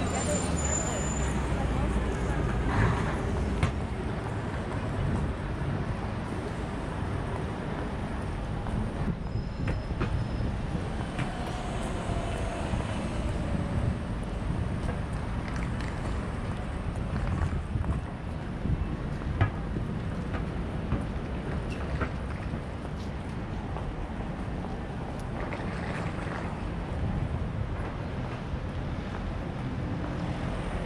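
Busy city street ambience: steady road traffic from buses and cars, with passers-by talking now and then and a few short sharp clicks.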